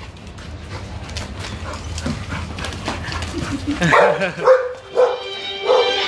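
Young pit bull–type dogs barking and yipping several times in the second half, after a few seconds of scuffling and paw clicks on the tiled floor. Music comes in near the end.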